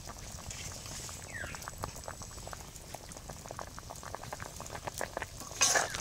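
Curry of drumsticks and potatoes simmering in an iron kadai, with many small irregular pops of bursting bubbles. Near the end comes a brief, louder scrape of a metal spatula stirring in the pan.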